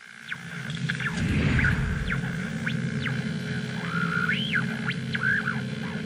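Electronic intro music for a logo sting: a steady low drone with a rumbling swell about a second in, and sliding whistle-like tones that rise and fall over it.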